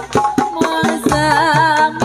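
Jaranan (kuda lumping) accompaniment music: quick hand-drum strokes over sustained pitched notes. A wavering, high melodic line comes in about a second in.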